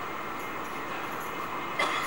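Steady hiss and hum of the recording's background noise in a pause between a man's spoken sentences, with his voice starting again just before the end.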